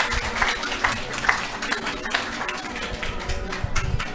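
Audience applauding with many hands clapping, mixed with some voices.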